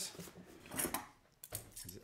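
Faint handling sounds: a few light clicks and scrapes as a taped cardboard box is handled on a desk and a small metal knife is picked up to cut it open.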